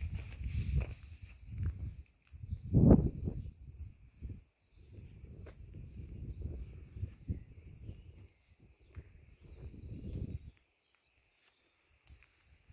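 Low rumbling noise on a handheld phone's microphone, coming and going in uneven gusts, loudest about three seconds in and dropping out near the end. A faint, steady high-pitched hum runs underneath.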